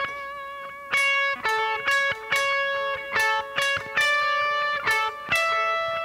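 Electric guitar with a clean tone playing a slow lead melody of single notes on the second string, centred on C♯. Each note is picked about every half second and left ringing into the next, and the line steps up to a higher note near the end.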